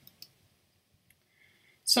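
A pause in a man's narration: near silence with a few faint clicks, then his voice starts again near the end.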